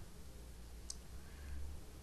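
A pause in a voice recording: faint room noise with a low hum, and a single soft click about a second in.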